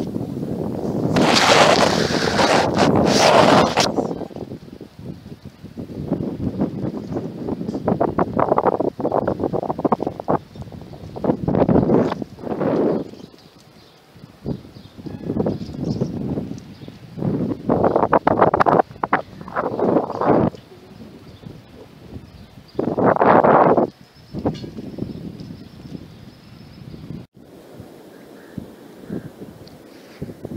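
Gusts of wind buffeting the microphone outdoors, rising and falling every few seconds, the strongest gust about a second in.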